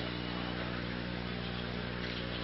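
Steady low hum with a faint, even background noise: bowling-centre room tone with no ball or pins sounding.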